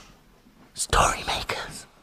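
A short whispered voice lasting about a second, with a sharp click partway through.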